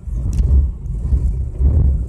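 Low, uneven rumble inside the cabin of a Nissan 4x4 rolling slowly downhill under hill descent control, the system braking the wheels on its own with no pedal input.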